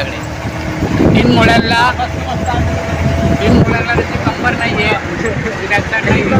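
Voices talking over the steady low running noise of a moving motorised chariot vehicle.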